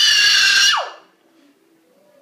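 A child's loud, high-pitched squeak-voice squeal, as if a toy mouse were squeaking. It is held steady for most of the first second, then falls sharply in pitch as it stops.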